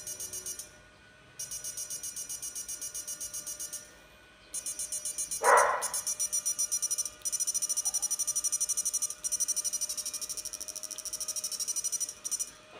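8-FET electrofishing pulse inverter running into a lamp test load, its pulsed output giving a rapid, even buzzing chatter that stops and restarts several times as it is switched. A short louder burst of noise comes a little past five seconds in.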